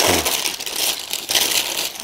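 Thin plastic bag crinkling and rustling as it is crumpled in the hands.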